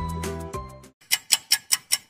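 Background music fades out about a second in, then a countdown-timer ticking sound effect starts: sharp, even ticks at about five a second.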